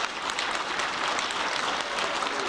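Audience applauding, a dense steady patter of many hands.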